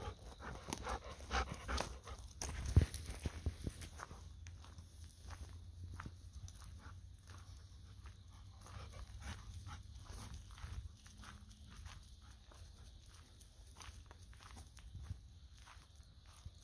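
A golden retriever panting close by in the first few seconds, then steady footsteps on a gravel path, over a faint steady chorus of autumn insects.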